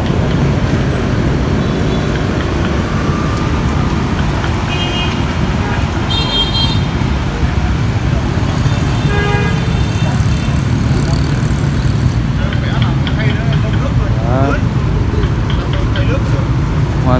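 Street traffic of motorbikes and cars running past at close range, a steady rumble, with a few short high-pitched horn toots about five, six and nine seconds in.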